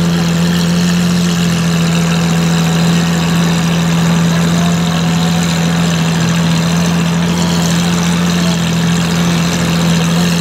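Lamborghini Aventador's V12 idling steadily with a deep, even hum, not revved.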